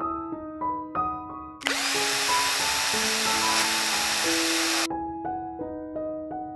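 Gentle piano background music, with a small power tool running steadily for about three seconds in the middle, starting and stopping abruptly.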